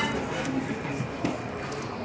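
A pause in speech: steady room noise with faint voices in the background, after a short click at the start.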